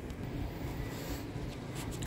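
Faint scratchy rubbing over a steady low background hum.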